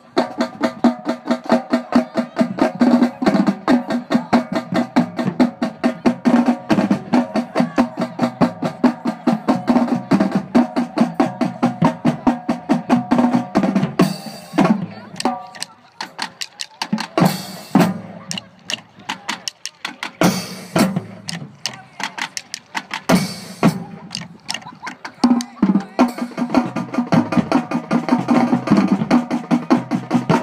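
A marching drumline playing together, rapid snare-drum strokes and rolls over lower drum hits. The playing is dense for the first half, breaks into scattered accented hits with short pauses in the middle, then turns dense again near the end.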